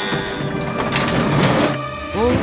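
Cartoon sound effect of a railroad crossing barrier arm swinging down, a mechanical whirring that cuts off shortly before the end, over background music.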